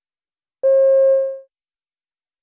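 A single electronic beep: one steady tone that starts about half a second in and fades away within a second. It is the cue tone that marks the start of a recorded extract in an exam listening test.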